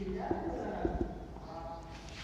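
Whiteboard marker writing on a whiteboard: a few light taps of the tip on the board, then a short squeak as the stroke drags near the end.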